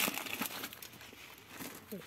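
Clear plastic packets of gold-coloured beads crinkling and rustling as they are handled, a dense crackle loudest at the start.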